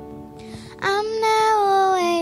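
Live worship music: a young girl's voice comes in about a second in and holds one long sung note, sagging slightly in pitch, over soft guitar accompaniment, amplified through the church PA.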